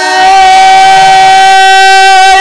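A man's voice in Amazigh inchaden singing, holding one long, loud, high note at a steady pitch.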